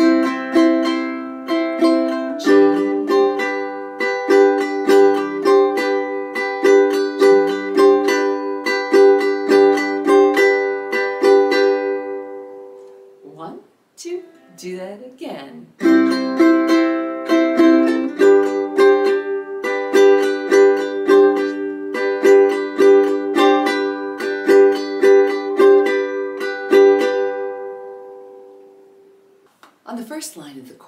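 Ukulele strummed in a steady island strum: one bar of C, then G chords with a quick change to G sus4 within each bar. The passage is played twice; each pass rings out, with a short spoken count in the gap about halfway through.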